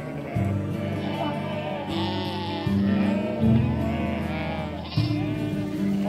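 Background music with sustained chords that change every second or so, while sheep bleat repeatedly over it.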